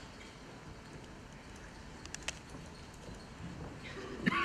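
Quiet hall room tone with a few faint clicks, a sharper pair about two seconds in: laptop keystrokes and clicks while web-page code is being edited.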